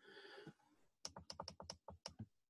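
Faint typing on a computer keyboard: a quick run of about eight keystrokes in the second half.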